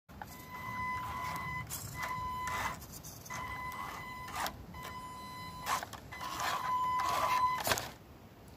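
Small electric RC crawler's motor and speed controller whining at one fixed pitch in several short bursts of throttle, each about a second long with pauses between. Short crackles and clicks from the tyres working over leaf litter and dirt.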